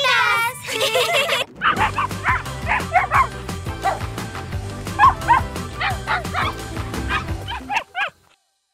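Cartoon puppy voices at first, then cheerful music with a steady beat, overlaid with many short dog barks and yips, the sound effects of animated puppies. It cuts off just before the end.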